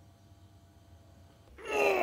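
A man's wordless cry sliding down in pitch, starting about one and a half seconds in after near quiet, as hot wax is spread on his cheek.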